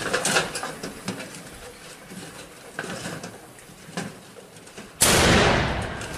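Faint scattered knocks and clicks, then about five seconds in a sudden loud blast that dies away over about a second.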